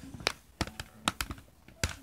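The pen of a Fisher-Price Doodle Pro magnetic drawing board tapping and clicking against its plastic screen while drawing: an irregular run of sharp taps, about seven in two seconds.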